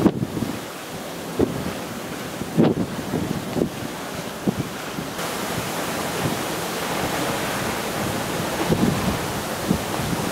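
Wind buffeting the microphone in irregular gusts over the steady wash of open, choppy sea.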